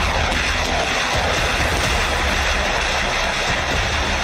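Steady, loud rushing noise over a low rumble, cutting off abruptly just after the end.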